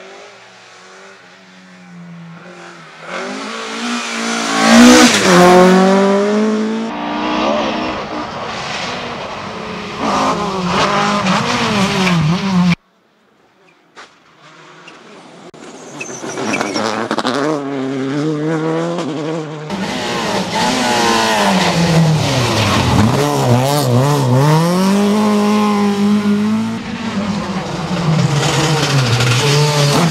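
Rally car engines at high revs on a tarmac stage. One car builds to a loud peak about five seconds in. The sound cuts out about 13 seconds in, then another car approaches and runs hard, its revs dipping and climbing again through the second half.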